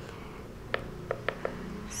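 Four quick, light clicks of the push button on an EarthPulse V6 PEMF controller being pressed to step the timer, starting about three-quarters of a second in, over a faint low hum.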